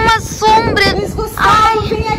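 High-pitched voices of children and a woman, drawn out and overlapping, rising and falling in pitch.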